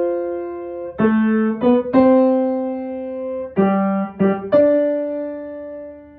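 Kawai grand piano played slowly in two-note chords, each struck and left to ring; the last chord, about four and a half seconds in, is held and fades away.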